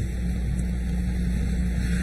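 Steady low hum with an even hiss from the hall's sound system and broadcast feed, fairly loud, with no speech over it.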